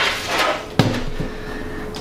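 Cooler Master Elite 110 mini-ITX computer case, a thin metal box, being handled and set down on a wooden desk: a knock, a brief scrape, then a sharper knock a little under a second in.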